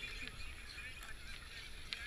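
A kayak paddle stroking through the water, with spray and drips falling off the blade, faintly, and a few faint high chirps in the background.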